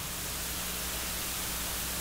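Steady hiss with a low hum underneath: the background noise floor of the recording, room tone without speech.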